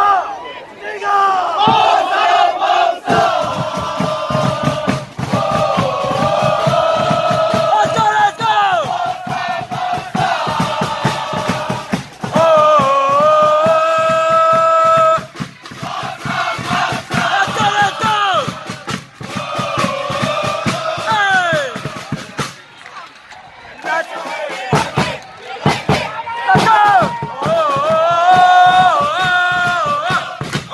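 Football supporters chanting in unison, a mass of voices singing a repeated terrace chant over a steady drum beat. The chant breaks off briefly about three-quarters of the way through, then starts up again.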